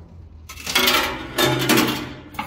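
Metal coins clattering and clinking inside a coin pusher arcade machine, in a quick jumble that starts about half a second in.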